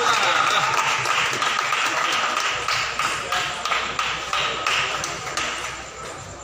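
Steady crowd chatter with a run of sharp table-tennis ball taps, about three a second, starting midway through.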